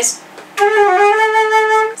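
Concert flute playing one of the phrase endings of a Swedish folk tune: starting about half a second in, a short run of slurred notes with a slight dip in pitch, settling on a held note that stops just before the end.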